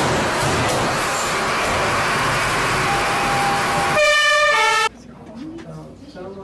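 Loud, even rushing noise, then a steady electronic tone about three seconds in and a short run of stepped alarm tones, the emergency alert that sends the firefighters out. The sound cuts off abruptly about five seconds in.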